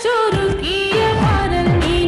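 A recorded song playing as a slideshow soundtrack: a singer holds long, wavering notes over a beat, with drum hits that drop sharply in pitch about twice a second.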